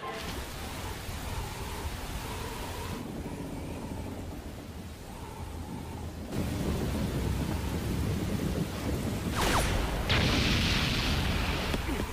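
Anime soundtrack ambience: a steady rumbling, hissing noise like a storm, which grows louder about six seconds in. A quick sweeping whoosh comes near the end, followed by a burst of higher hiss.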